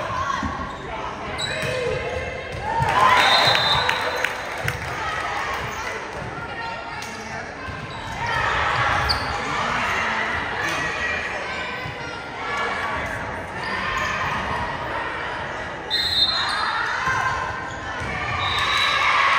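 Volleyball game sounds in an echoing gymnasium: the ball is struck sharply during a rally, with shouting and voices from players and spectators rising in swells, the loudest about three seconds in.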